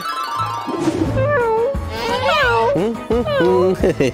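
Cartoon cat meowing several times, each call gliding up and down in pitch, over background music.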